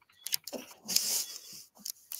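A few soft clicks, then a short breathy hiss about a second in, and another click near the end.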